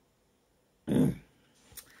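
A man clearing his throat once, a short burst about a second in.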